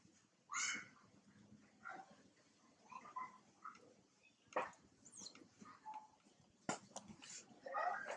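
Macaques giving short, high squeaky calls, several separate ones with the loudest about half a second in and another near the end, with a couple of sharp clicks between them.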